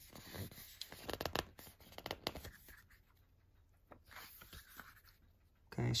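Pages of a paper booklet being turned by hand: a quick run of faint paper rustles and crinkles in the first two and a half seconds, then a few more around four seconds in.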